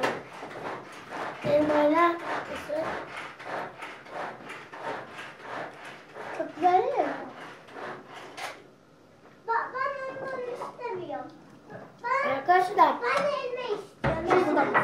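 Children talking in short bursts. Between the words come many light clicks, from spoons tapping and scraping a bowl as they eat.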